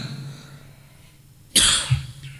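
A man coughs once, a single short loud burst about a second and a half in, close to the microphone.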